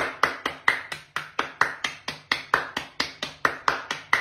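One person clapping hands in a steady rhythm, about four to five claps a second.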